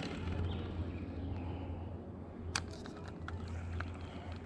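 Scattered light clicks from hands working a baitcasting rod and reel, with one sharper click about two and a half seconds in, over a steady low rumble.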